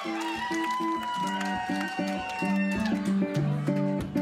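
Live band playing a fast, evenly repeated plucked-string riff on guitar and bass, with whoops from the crowd over the first second or so.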